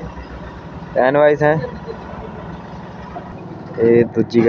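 Mahindra Scorpio SUV's engine running steadily as it is driven slowly.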